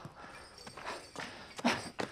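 Footsteps and light clicks as a person moves about, with a short louder burst near the end.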